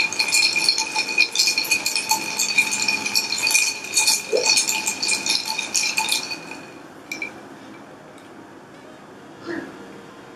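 Ice cubes rattling and clinking against a glass as it is swirled, the glass ringing steadily under the clicks; it stops about six and a half seconds in.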